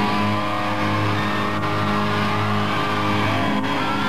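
Distorted electric guitar of a live rock band ringing out in long held notes, with a few pitch bends and no drum beat.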